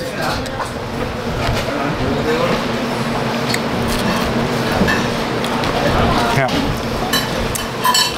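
Background chatter of other diners in a small eatery over a steady low hum, with a few light clinks of cutlery and dishes.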